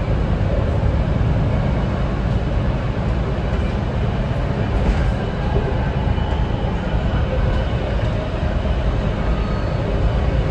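BART Legacy Fleet car running along the track, heard from inside the car: a loud, steady rumble of wheels and running gear, with faint high whines coming and going.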